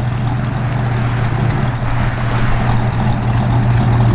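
GM Ram Jet 350 fuel-injected small-block V8 idling steadily, heard at the tailpipes of its stainless dual exhaust with Smitty's mufflers.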